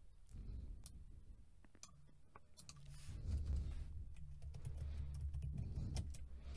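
Faint computer keyboard typing: scattered, irregular key clicks.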